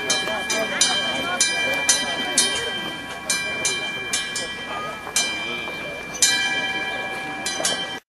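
Orthodox church bells ringing in quick, uneven strikes, about two a second, with several fixed pitches ringing on over one another, above the murmur of a crowd. The ringing stops abruptly at the end.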